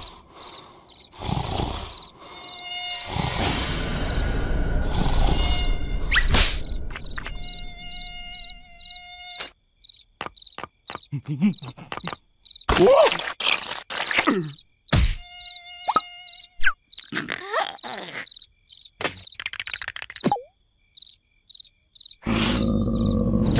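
Cartoon mosquito buzzing, a high whine that comes and goes about twice a second. A wash of noise swells and fades in the first half, and sharp knocks and short gliding sound effects break in during the second half.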